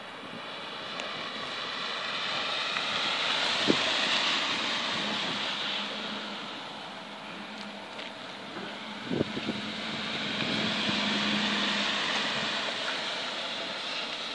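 Ford F-150 pickup truck driving slowly in a loop on a dirt lot, its engine and tyres on the dirt swelling twice as it comes close, about four seconds in and again around eleven seconds. A couple of short thumps are heard, the loudest about nine seconds in.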